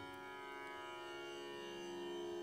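Harmonium holding a steady drone chord, several notes sounding together, faint and unchanging with a slight swell near the end.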